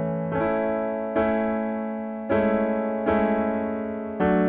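Piano chords played with the right hand in the key of A, each chord struck twice and left to ring and fade: two strikes of one chord, then two strikes of the next.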